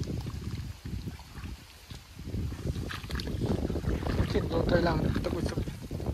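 Feet sloshing and splashing through shallow muddy paddy water in uneven steps, with wind buffeting the microphone; the wading grows louder about two seconds in.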